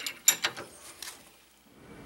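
Handling noise at a bench vise: a few sharp metallic clicks and taps within the first second, the loudest about a third of a second in.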